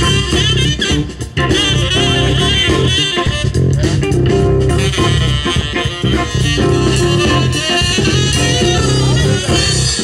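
An instrumental passage of a band playing, with drum kit, bass guitar and guitar under a wavering lead melody line, and no singing.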